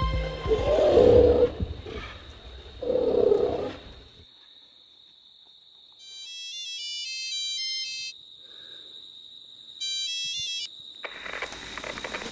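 A mobile phone ringtone plays a short stepped electronic melody twice, about six and ten seconds in, over a steady high whine. Before it, the scary score fades out with two low growl-like sounds, and rustling starts near the end.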